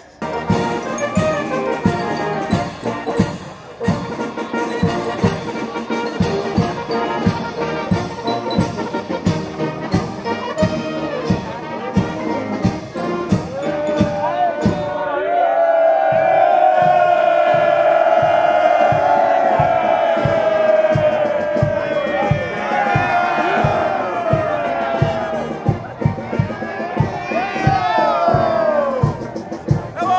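Brass band playing a march over a steady drum beat of about two beats a second, the melody loudest about halfway through.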